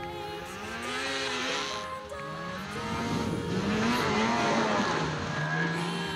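Snowmobile engine revving, its pitch rising and falling several times and loudest in the second half, mixed with background music.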